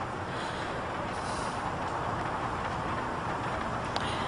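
Steady background noise with no distinct events: an even hiss and rumble, like room or street ambience on the soundtrack.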